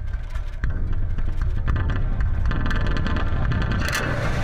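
Leaf Audio Microphonic Sound Box's contact-mic sounds run through its effects: a low rumbling drone with scattered clicks and faint pitched ringing, turning brighter and more crackly near the end.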